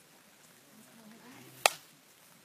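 A single sharp snap near the end, much louder than the faint outdoor background around it.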